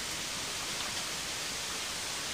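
Steady hiss of background noise with no distinct sounds: the recording's room tone between lines of dialogue.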